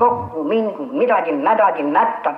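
A person talking continuously; the words are not made out.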